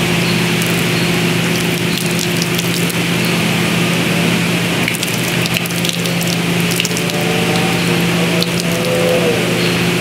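A dog lapping water squirted from a bottle, with water spattering and dripping onto concrete as scattered small ticks and splashes. A steady mechanical hum and hiss runs underneath.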